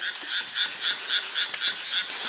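Chorus of small frogs croaking in rice paddies: an even run of quick, repeated calls, about four a second.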